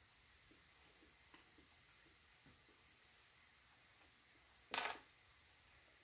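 Near silence while a spoonful of bircher muesli is tasted, with faint small ticks and one short rush of noise about five seconds in.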